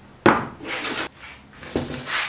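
A hand tool set down on a wooden workbench with a sharp knock, then a scraping rub as hard parts are slid and handled on the board, and another lighter knock near the end.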